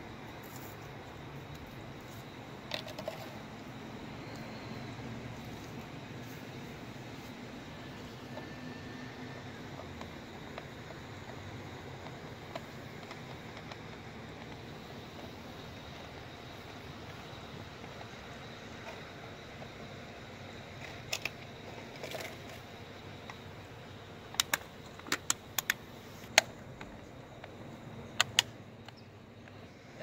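Steady outdoor background noise with a few short, sharp clicks and knocks, most of them in a cluster a few seconds before the end.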